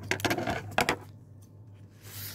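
Handling noise: a short burst of rustling and hard clicks in the first second as the pleated bow material and a pair of scissors are handled, then quieter, with a steady low electrical hum underneath.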